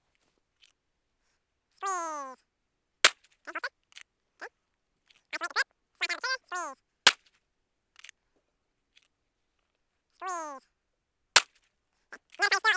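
Three single handgun shots, each a sharp crack, spaced about four seconds apart. This is slow, deliberate fire, with the pistol brought back to the holster and reset between shots.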